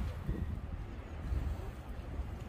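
Wind buffeting the microphone outdoors: an irregular low rumble that fades after a louder gust.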